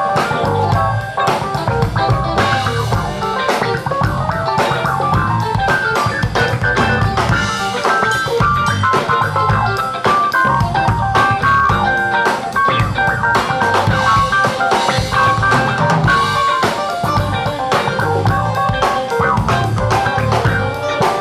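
Live band playing a loud, steady passage with no singing, electric guitar and drum kit to the fore over bass.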